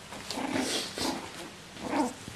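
Havanese puppies growling in a few short bursts as they play-fight.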